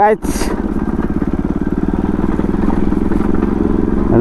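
Bajaj Pulsar NS200's single-cylinder engine running steadily at low speed while the motorcycle is ridden, with a brief hiss just after the start.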